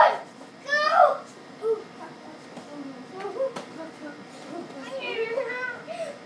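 Young children's high-pitched shouts and cries as they play-wrestle, loudest at the start and about a second in, with a single sharp knock about halfway through.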